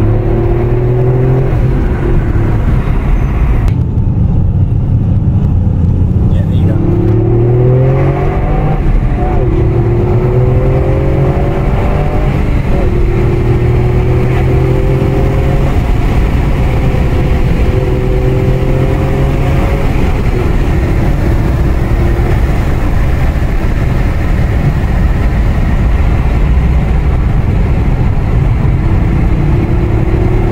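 Toyota GR Yaris's turbocharged 1.6-litre three-cylinder engine heard from inside the cabin under hard acceleration. The revs climb and drop back again and again as it is driven through the gears, with a steadier stretch in the middle.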